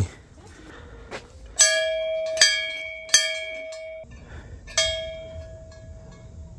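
Hanging brass temple bell rung by hand: four clear strikes a little under a second apart, each ringing on with a bright, pitched tone. The ringing is stopped short about four seconds in, just before the last strike rings on.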